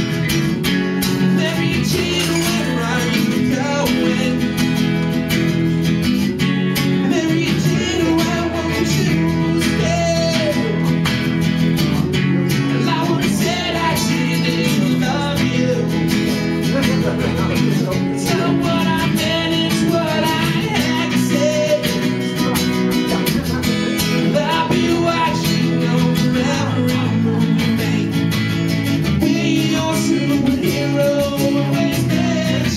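Two acoustic guitars strummed and picked live, with a man singing into a microphone in a small room.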